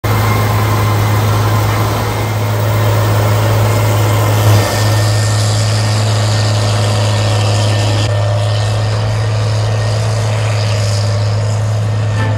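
Case IH 635 Module Express cotton picker running in the field, its six-cylinder Iveco engine and cotton-blowing system making a steady drone: a strong low hum under a broad hiss, with a brief swell about four and a half seconds in.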